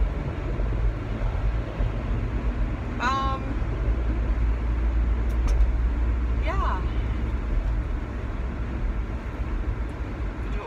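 Steady low road and engine rumble inside a moving SUV's cabin at highway speed. Two short vocal sounds come about three seconds in and again about six and a half seconds in.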